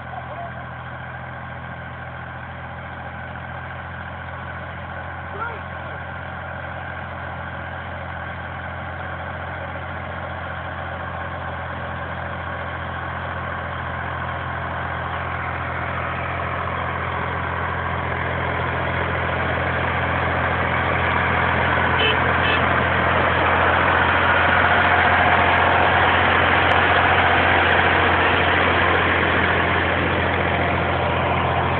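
Torpedo 4506 tractor's diesel engine running steadily as it works a rotary tiller through the soil, growing louder as it approaches and comes close alongside in the second half.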